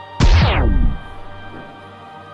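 A sudden loud boom with a pitched sweep that falls from high to low, dying away within a second, over the film's background score.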